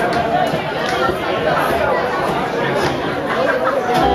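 Audience chatter: many voices talking at once in a hall, with no music playing.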